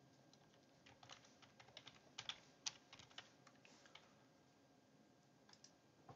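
Faint typing on a computer keyboard: a quick run of key clicks for a few seconds, then near silence.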